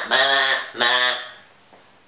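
A voice singing two held notes without clear words, the end of a wordless sung phrase. It dies away about a second and a half in.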